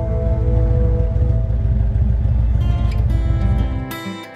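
Background music over the low rumble of an Indian Roadmaster V-twin motorcycle engine running at low speed. The rumble stops just before the end.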